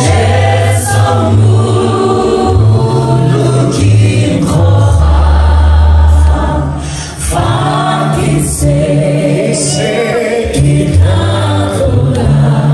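Gospel worship singing: a small group of singers on microphones leading a song through the PA, with the congregation singing along. Deep bass notes are held under the voices and change every second or two.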